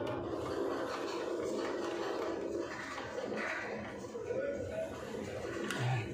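Indistinct background voices murmuring throughout, with no clear words, and a single dull knock near the end.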